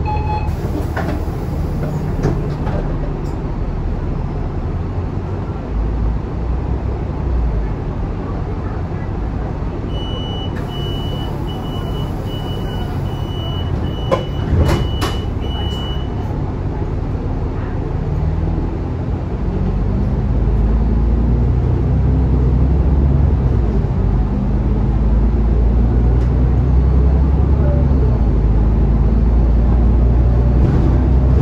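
Inside the lower deck of an Alexander Dennis Enviro500 Euro 5 double-decker bus: the diesel engine idles with the bus standing, then runs louder as the bus pulls away in the second half. About ten seconds in, a run of short high beeps sounds for about six seconds.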